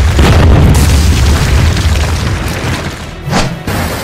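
Loud cinematic boom with a heavy low rumble under dramatic music, fading after a second or so, then a second swooshing hit about three and a half seconds in: sound effects for booby traps triggering.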